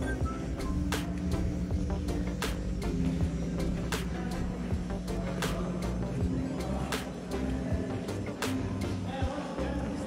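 The Great Stalacpipe Organ playing a slow tune: stalactites struck by electrically driven mallets give held, ringing low notes, with a sharp strike every second or so.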